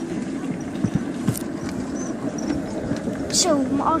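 Summer toboggan sled being hauled uphill by its tow lift along the steel track trough: a steady rumbling rattle of the wheels running in the metal channel, with a few sharp clicks.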